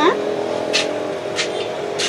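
Steady background hum with several held tones, broken by two short hisses about a second apart.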